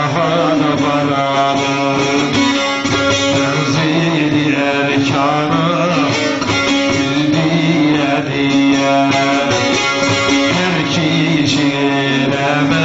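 Bağlama (saz) playing semah music, with a voice singing over steady droning strings.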